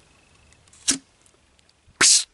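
A single short, sharp pop about a second in as the lid of a sealed screw-top jar of olives is opened, releasing the fermentation gas that had built up inside and domed the lid, which is a sign the cure has gone well.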